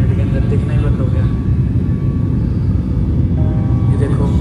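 Airliner jet engine noise heard inside the passenger cabin during the climb after takeoff: a steady low rumble.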